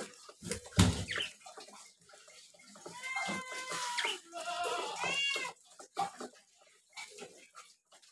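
Budgerigars chirping as they feed, with a held call around the middle and a short rising-and-falling chirp a second later, among light clicking.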